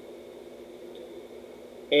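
Quiet room tone: a faint, steady hum and hiss in a small room, with no distinct event. A man's voice starts a word at the very end.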